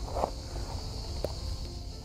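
Soft background music with sustained notes, over a steady high-pitched insect drone.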